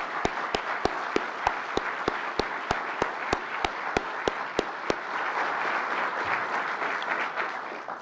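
Audience applauding. One person's claps stand out close to the microphones at about three a second and stop about five seconds in, and the applause fades near the end.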